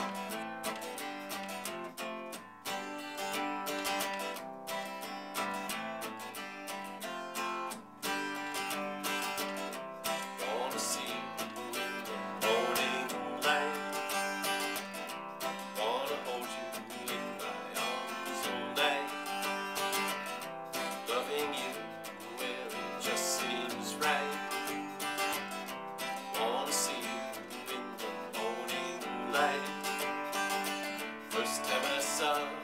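Steel-string acoustic guitar strummed steadily, playing the chords of a folk song.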